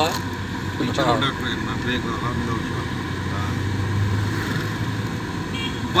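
Car engine and road noise heard inside the cabin of a moving car, a steady low drone.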